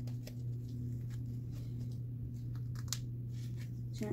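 Printable vinyl being peeled by hand from its backing sheet, making faint scattered crackles and ticks, over a steady low hum.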